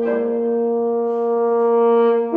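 Trombone and wind quintet holding a long sustained chord, growing slightly louder toward the end.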